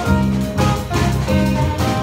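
Live jazz quintet playing: alto saxophone carrying the melody over piano, electric bass, archtop guitar and drums, with a steady swinging pulse.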